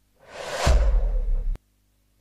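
Broadcast transition whoosh effect: a swelling rush with a deep boom underneath, cut off suddenly about a second and a half in. This is the stinger that marks the cut to an instant replay.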